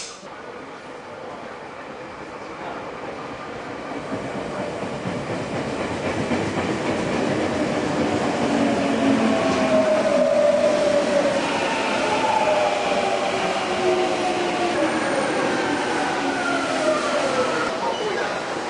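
Electric commuter train pulling into a station platform. Its running noise builds over the first several seconds, then whining, squealing tones slide down in pitch as it brakes and slows to a stop.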